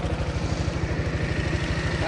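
Motorcycle engine idling with a steady, rapid pulse.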